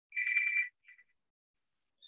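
A phone ringing: a high electronic tone, rapidly pulsing, for about half a second, followed by a short blip.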